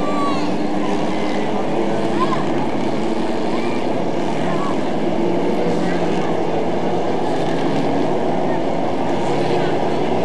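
A pack of dwarf race cars, small stock cars driven by motorcycle engines, running together around a paved oval. Several engine notes overlap at a steady level throughout.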